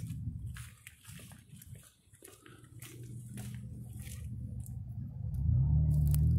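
Footsteps and handling noise of a phone camera, irregular clicks and scuffs, over a low steady hum that grows much louder about five seconds in.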